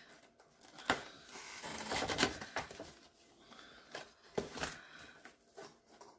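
A cardboard shipping package being opened and handled: a few sharp clicks and knocks, with a longer rustle about two seconds in.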